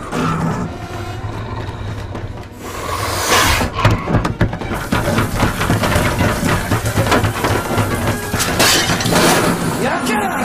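Film fight soundtrack: music with a steady low drone under repeated crashes and breaking sounds, loudest in a burst of smashing about three to four seconds in, mixed with wordless cries.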